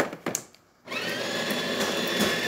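A few knocks as the portafilter is seated in a De'Longhi La Specialista, then the machine's newly replaced built-in grinder motor starts about a second in and runs with a steady whine.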